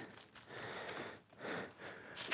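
Faint breath sounds close to the microphone, rising and falling in a few soft swells.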